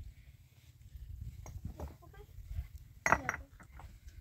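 Flat limestone slabs knocking and scraping against each other as they are lifted and set in place by hand, with a few light clinks and one loud stone-on-stone clack about three seconds in.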